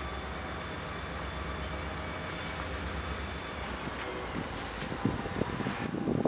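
Diesel freight locomotives pulling away with a steady low engine rumble and a thin high whine that slowly falls in pitch in the second half. Toward the end, wind starts buffeting the microphone in irregular thumps.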